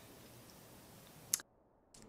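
Faint steady hiss, then a single short click about one and a half seconds in, after which the sound drops out to dead silence.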